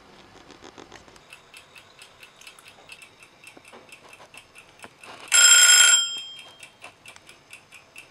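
Wind-up egg-shaped plastic kitchen timer ticking, about four ticks a second, with its bell ringing briefly about five seconds in: the set time is up, here the five minutes of simmering.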